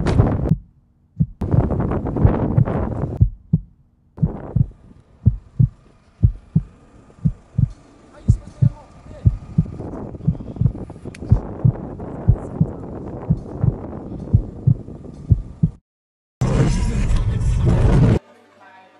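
Soundtrack effect of a low, steady thumping pulse like a heartbeat, about two beats a second, over a faint hum. Earlier and after a brief drop-out near the end come dense, loud passages of sound.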